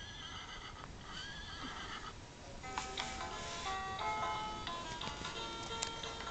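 Plush rocking horse's built-in electronic sound unit playing a recorded horse whinny, twice in the first two seconds, then a tinny electronic tune of steady stepped notes.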